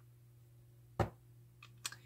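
A single sharp click about a second in, then two fainter ticks near the end, over a faint low steady hum.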